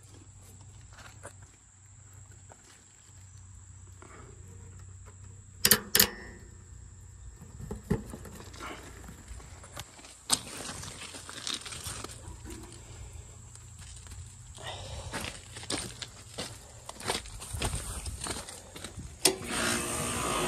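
Handling noises from work on an air-conditioner condenser's wiring and meter leads: scattered clicks and rattles, with two sharp clicks about six seconds in. A faint low hum fades after about five seconds, and the handling noise grows busier over the last few seconds.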